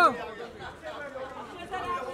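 Overlapping chatter of a crowd of voices, photographers calling out, after a loud shout breaks off right at the start.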